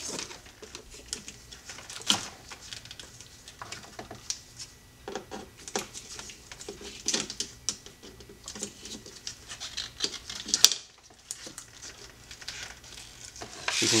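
Flathead screwdriver loosening metal hose clamps on an air intake pipe: a run of small, irregular metallic clicks and ticks, with one sharper click about ten and a half seconds in.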